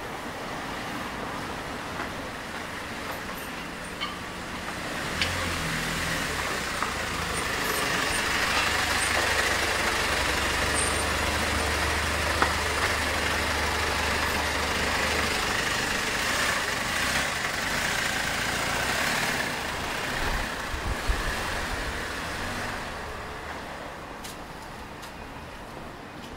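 Street traffic with a truck's engine running close by. It grows louder a few seconds in, holds a low steady hum through the middle, and fades near the end.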